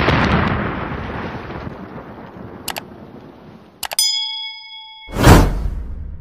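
Explosion sound effect: a boom that dies away over about three seconds, then a bright bell-like ding about four seconds in, then a louder rushing boom that swells and fades near the end.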